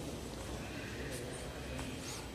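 Footsteps on a polished stone floor in a large, echoing hall, with a few faint clicks over a steady low rumble and faint distant voices.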